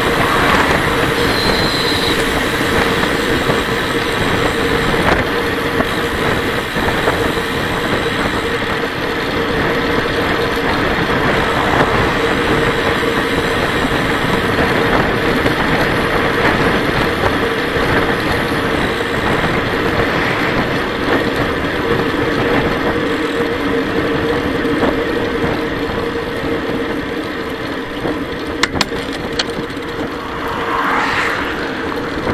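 Wind and tyre-on-road noise picked up by a camera on a moving road bicycle: a steady rushing noise with a steady hum under it, and a couple of sharp clicks near the end.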